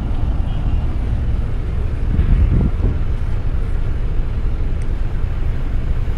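Steady low rumble of a moving bus, engine and road noise heard from inside the passenger cabin.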